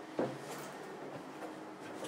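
A wooden cabin door being opened: its latch gives one sharp knock just after the start, then the door moves with lighter rubbing sounds, over a faint steady hum.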